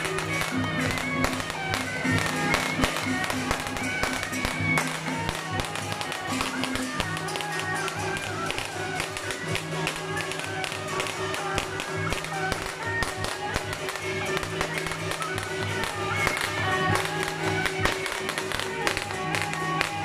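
Taiwanese temple-procession music for a dancing deity-general puppet: a shrill reed-horn melody of held notes over a dense, continuous beating of drums, gongs and cymbals.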